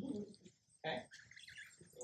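Birds calling: a short low call about a second in, followed by a few brief higher chirps.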